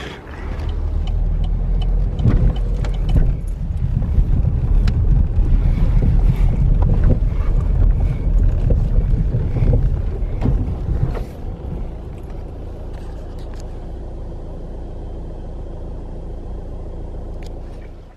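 Car running, heard from inside the cabin: a loud, uneven low rumble for the first eleven seconds or so, then a quieter, steady hum.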